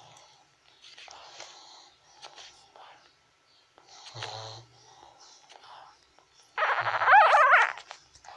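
Newborn pug puppies nursing, with soft snuffling and suckling noises. One puppy gives a short whimper about four seconds in and a loud, wavering squeal near the end.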